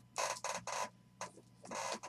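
Aluminium briefcase of a Panini Flawless box being handled and slid across a table: a few short scraping noises, a light click, then a longer scrape near the end.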